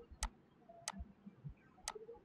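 Three faint, sharp clicks: one about a quarter second in, one near the one-second mark and one near the end, with near quiet between them.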